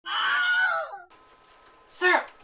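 A high-pitched, wavering scream from a person's voice, about a second long, sliding down in pitch as it ends, followed by quiet room tone with a faint steady hum.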